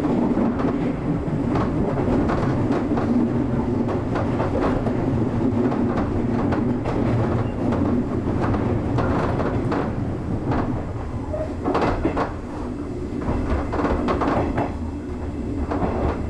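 JR 201 series electric train running with a steady rumble, its wheels clicking irregularly over rail joints and points as it runs into a station, heard from the driver's cab.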